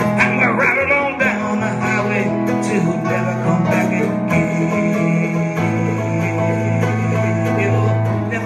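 Live instrumental passage of a folk ballad: a digital stage piano plays sustained chords that change every second or two, with a small plucked string instrument strummed along.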